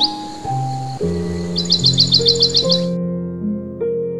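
Slow, sad solo piano music with birdsong mixed in: a bird's rapid high trill of about nine notes in the middle, over a faint outdoor hiss that stops about three seconds in.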